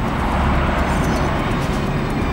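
Typhoon wind and heavy seas: a steady, dense rush of noise with a low rumble underneath.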